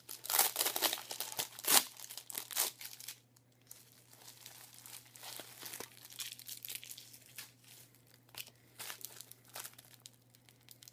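Packaging crinkling and tearing as a parcel of drink cans is unwrapped by hand, busy and loud for the first three seconds, then quieter, scattered rustles and small clicks. A faint steady low hum runs underneath.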